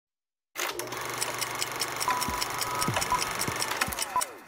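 Sound design for a TV title sequence: rapid, regular clock-like ticking starts about half a second in, joined by a held electronic tone and a few falling whooshes. The last whoosh comes near the end.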